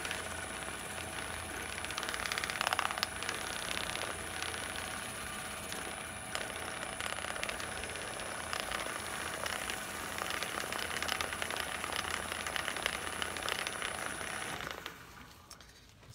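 Wood lathe running with a steady motor whine while a paper towel rubs and crackles against the spinning resin-and-wood blank as finish is applied. A little over three-quarters of the way through, the lathe is switched off and the whine stops.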